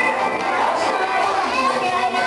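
Many children's voices chattering and calling out over pop music playing for a dance routine.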